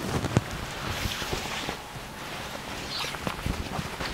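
Silk satin fabric rustling as it is lifted, shaken out and handled, with scattered small ticks.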